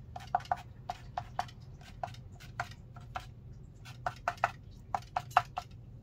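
A quick, irregular run of sharp taps from a small painting tool dabbed against watercolour paper, stamping texture into the painting's foreground.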